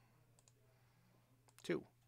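Two faint computer mouse clicks about a second apart, then a man's voice says a single word near the end.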